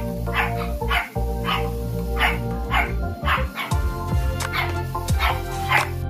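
A dog barking over and over, about two barks a second, over background music.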